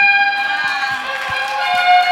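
A banquet audience applauding, starting about half a second in, over a held high musical note.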